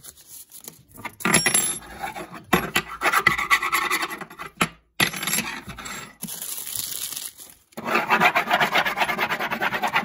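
Quick, scratchy strokes rubbing over a wooden tabletop. They start about a second in and run in three long spells, with short breaks about five and about eight seconds in.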